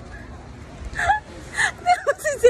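Short breathy laughs and gasps, first about a second in and again near the end, each a brief high-pitched sound.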